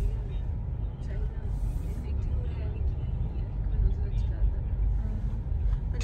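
A steady low rumble of a car's engine and tyres heard from inside the cabin as the car rolls slowly along.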